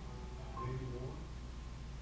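A man's voice through a handheld microphone, a short stretch of speech about half a second in, over a steady low electrical hum.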